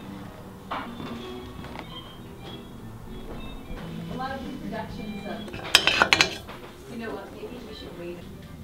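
Hard objects clinking together: a quick cluster of sharp clinks about six seconds in, over faint background voices.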